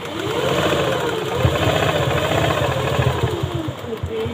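Motorised sewing machine stitching satin fabric: a rapid needle clatter under a motor whine that rises and falls with the speed, starting at the beginning and slowing to a stop just before the end.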